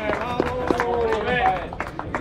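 People talking, with one or two voices clear over the crowd and a few faint clicks; no other sound stands out.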